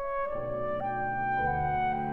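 A trio of clarinet, cello and piano playing romantic chamber music: held, sustained notes moving in steps, with deeper bass notes coming in about one and a half seconds in.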